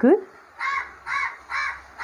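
A crow cawing four times in a row, about two caws a second.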